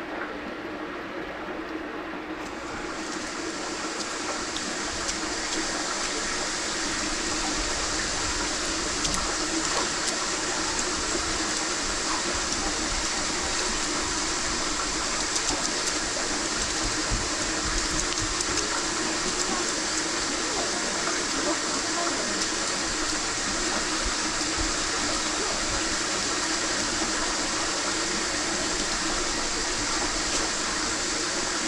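Water rushing steadily over a steady low hum; the rush comes on about two to three seconds in and builds to a constant level within the next few seconds.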